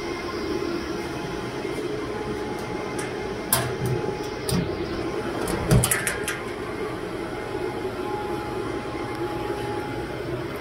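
Steady whir of the cooling fans and air conditioning running in a cell site equipment shelter, with a faint steady tone above it. A few brief knocks and clicks come about three and a half seconds in and again around six seconds.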